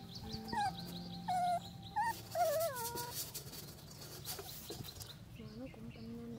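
A young puppy whimpering: a string of short, high, wavering cries in the first half, with a few lower cries near the end.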